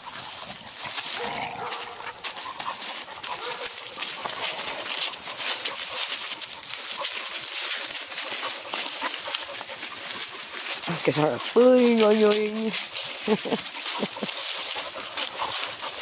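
Puppies wrestling on dry leaves: steady rustling, crunching and scuffling of leaves under paws and bodies. A short vocal sound rises out of it about eleven seconds in, the loudest moment.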